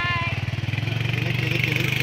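Small motorcycle engine running steadily at low speed, an even rapid pulsing with a higher hum over it.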